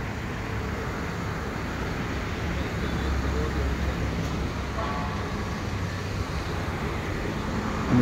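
Steady background hubbub of a busy exhibition: a continuous noisy murmur with faint distant voices, one briefly clearer about five seconds in.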